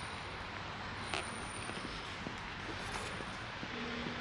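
Steady hiss of rain heard from inside a concrete parking garage, with a couple of faint clicks of footsteps.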